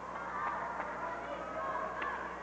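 Arena crowd noise: a steady hum of spectator voices with faint shouts, and a couple of faint knocks about half a second in.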